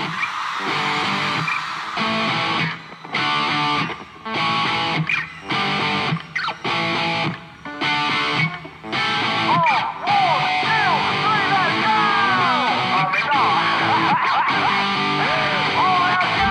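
Live rock band with electric guitars playing stop-start chord stabs, broken by short gaps. From about ten seconds in, the playing runs on continuously, with a lead guitar line full of rising and falling string bends.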